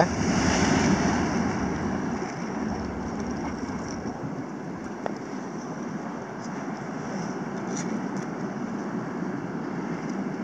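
Surf of a rough, rising sea breaking against the rocks of a sea wall: a steady rushing wash that swells in the first couple of seconds, then eases to an even level, with one faint click about halfway through.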